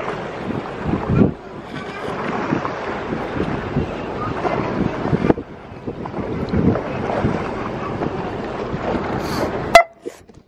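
Wind on the microphone over a small tour boat's running motor and lapping sea water, with other passengers' voices in the background. A single sharp click near the end.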